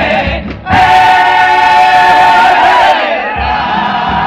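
Comparsa chorus of male voices singing together in harmony, holding one long note from about a second in until near the end.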